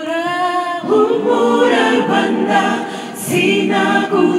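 Mixed gospel choir singing a cappella in Kinyarwanda, women's and men's voices in harmony through microphones. A single held note opens, and the fuller choir sound comes in about a second in.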